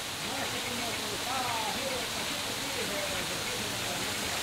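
Steady rush of a forest stream flowing over rocks into a natural pool, with faint voices in the background.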